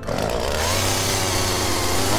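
Chainsaw sound effect: a chainsaw engine starts suddenly at full noise and runs loud, revving up about half a second in.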